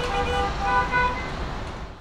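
A city bus running at a stop with a low engine rumble, and over it a steady electronic tone that shifts to a higher pitch about half a second in, then fades near the end.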